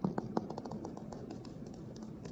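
A quick run of light clicks and taps from a stylus working on a tablet, loudest at the very start and thinning out after about a second and a half.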